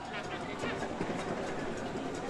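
Football stadium ambience from a match broadcast: a steady background wash with faint, distant voices.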